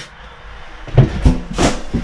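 A sharp knock about a second in, then a short scrape, from someone moving about inside a bare sheet-metal oven box.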